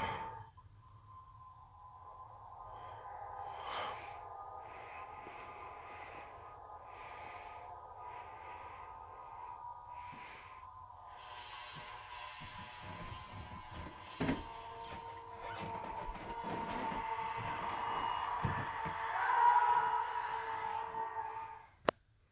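Eerie ambient DVD menu music played through a tablet's small speaker: a sustained drone with scattered swells, growing louder about three-quarters of the way through, then cutting off suddenly with a click near the end.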